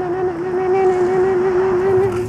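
A single long held note with a slight waver, over a steady hiss.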